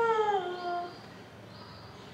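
A baby's drawn-out vocal 'aah', rising slightly and then falling in pitch, lasting about a second before it stops.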